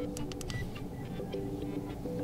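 A few faint clicks of a smartphone's side button being pressed, over a low steady hum.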